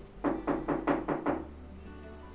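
A rapid series of about six knocks, roughly five a second, typical of knocking on a door, over soft background music.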